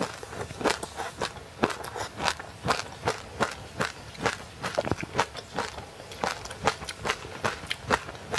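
Close-miked chewing of frozen passionfruit ice coated in sesame seeds: crisp crunches, about two a second.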